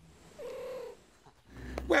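A cat gives a single short call, about half a second long, as a hand reaches out to pat it.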